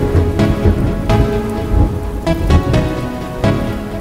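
Rain sound effect layered under music, with a series of notes striking at irregular intervals over a steady rushing rain.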